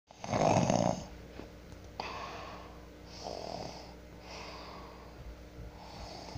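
A person breathing close to the microphone, raspy breaths in and out about every second, after a louder rush of breath in the first second.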